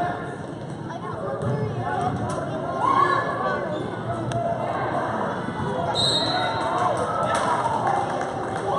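A basketball being dribbled on a gym floor in a large, echoing hall, under the steady chatter of spectators, with a brief high squeak about six seconds in.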